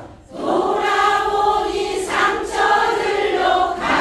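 A large class of mostly women singing a line of a trot song together in unison, without backing music, coming in about half a second in after a brief pause.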